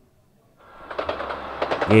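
Train running on rails, the wheels clattering, fading in about half a second in and growing louder.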